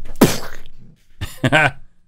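A man coughing: one harsh cough near the start, then shorter voiced coughs about a second later.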